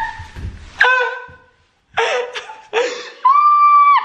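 Young women laughing hysterically and shrieking in bursts, ending in one long, high, steady squeal held for nearly a second.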